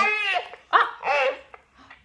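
A baby's high-pitched vocal sounds, two short cries rising and falling in pitch, picked up by the Meowsic cat piano's toy microphone and played louder through the toy's speaker.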